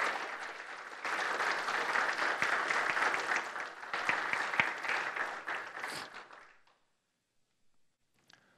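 Audience applauding, which dies away about six and a half seconds in.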